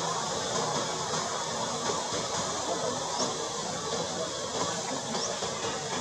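Steady outdoor background hiss, with two brief faint high rising chirps, one about three seconds in and one near the end.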